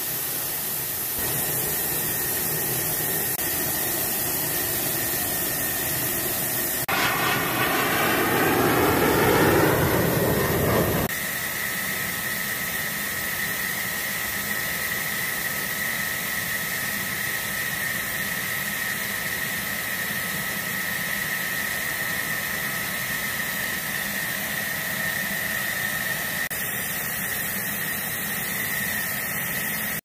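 F-16 fighter's jet engine running on the ground: a steady high whine over a broad hiss. From about seven to eleven seconds in, a louder stretch with gliding tones swells up, then cuts off suddenly.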